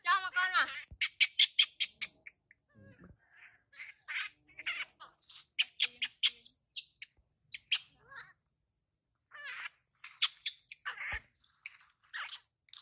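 High-pitched animal calls: a short gliding squeal near the start, then quick runs of short, sharp chirps, with a brief pause about two-thirds of the way through.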